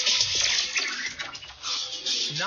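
Rushing, hissing whoosh sound effect from a TV show's animated title sequence, thinning briefly about one and a half seconds in.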